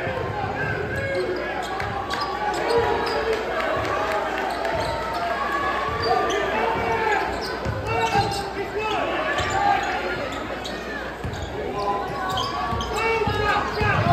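Basketball dribbled on a hardwood court, repeated thuds in a large gym, under steady crowd chatter.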